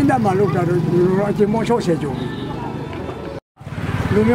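A man talking to the camera, with a steady low hum beneath his voice. The sound drops out to silence for a moment near the end, at an edit.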